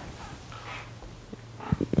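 Quiet pause in a man's talk: a faint low hum, soft handling sounds from the tablet being moved, and a few small clicks shortly before the speech resumes.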